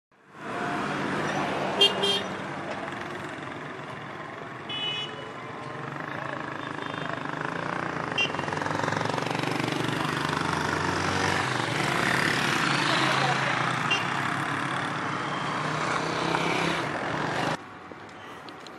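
Road traffic: vehicle engines running and tyre noise as vehicles pass, with a few brief higher-pitched sounds standing out, the loudest about two seconds in. The sound cuts off suddenly shortly before the end.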